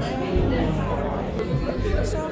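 Busy restaurant chatter, many voices talking at once, over background music with a steady low beat.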